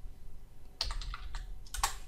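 Typing on a computer keyboard: a quick run of keystrokes that starts nearly a second in.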